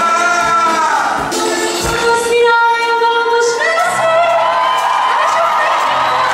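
Live band music with a man singing long, wavering held notes into a microphone, one sliding down about a second in. Drums play through the first two seconds, drop out for a moment, and the band's bass comes back in about four seconds in.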